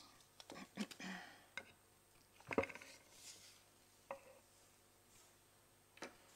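Scattered small clicks and knocks of objects handled on tables: a few in the first second and a half, the loudest about two and a half seconds in, and another a little after four seconds.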